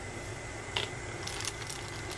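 Quiet handling sounds over a steady background hum: a small plastic wrench is set down on a tabletop with a faint click under a second in. Near the end comes light crinkling of a small plastic bag of nuts being picked up.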